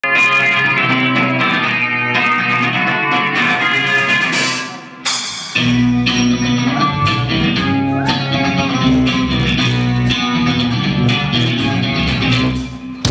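A live punk rock band playing. The electric guitar leads at first with no bass under it, dips briefly, and about halfway through the bass guitar and drums come in with the full band.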